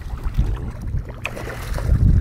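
Water splashing as a hooked redfish thrashes at the surface beside a kayak, over low rumbling wind noise on the microphone.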